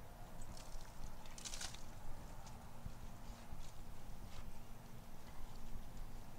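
Hands working potting soil around pansy and viola transplants in a planter: soft scattered rustles and scrapes, one louder rustle about a second and a half in, over a steady low rumble.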